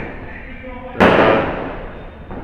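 A single sudden sharp bang about a second in, its noisy tail fading away over about a second.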